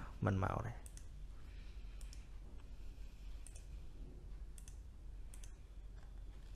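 A few faint, isolated clicks, about five spread over several seconds, over low room noise and a steady hum, after a last brief bit of speech at the very start.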